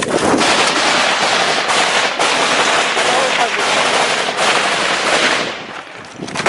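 Sustained automatic gunfire: a dense, unbroken clatter that dies away near the end.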